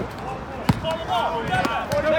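A volleyball smacked once, a single sharp hit about two-thirds of a second in, followed by players' shouts.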